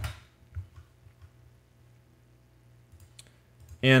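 A computer keyboard keystroke, the Enter key pressed to run a typed command, then a couple of faint clicks over a low steady hum.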